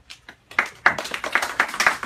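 Audience clapping in welcome, breaking out about half a second in and continuing as a dense patter of hand claps.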